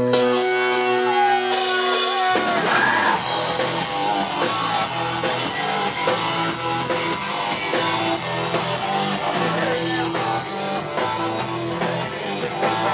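Live punk rock band with electric guitars, bass and drum kit: a held, ringing chord with a sliding note, then about two seconds in the full band comes in and keeps playing loudly.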